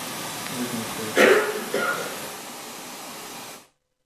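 Steady hiss of a courtroom microphone feed, with a short loud vocal sound, a cough or a clipped word, about a second in and a fainter one just after. The audio cuts off suddenly near the end.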